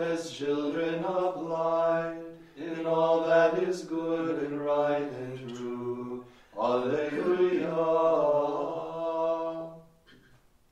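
Liturgical plainchant sung by low male voices in three long, sustained phrases, with brief pauses for breath about two and a half seconds in and again just past six seconds.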